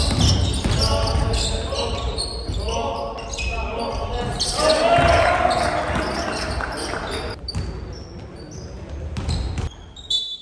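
Basketball bouncing on a hardwood gym court during a game, with players' shouting voices echoing in the large hall; the activity quietens in the last few seconds.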